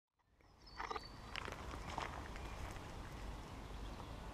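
Faint outdoor ambience: a low, steady rumble with scattered light clicks and rustles, starting under a second in after silence.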